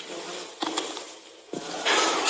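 Hiss on a broadcast audio feed with a faint murmur of voices beneath it.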